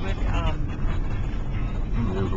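Steady low rumble inside a moving car's cabin, the engine and tyres on the road.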